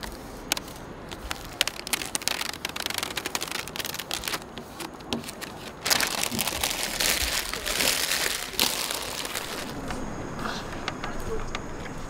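Large adhesive vinyl sticker crinkling and crackling as hands lift it and smooth it down onto a bus roof. A denser run of crackling comes about six seconds in and lasts a few seconds.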